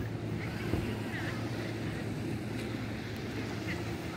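Steady low drone of a distant motorboat engine across the water, with light wind on the microphone and faint far-off voices.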